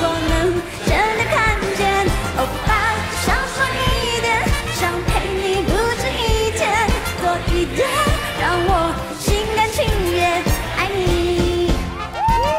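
A woman singing a Mandarin pop song live into a handheld microphone over upbeat pop backing music with a steady beat.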